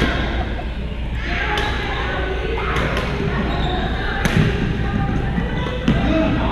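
Pickleball paddles striking the plastic ball in a rally, a sharp pop every second or so, in a large gym hall with hits from neighbouring courts mixed in.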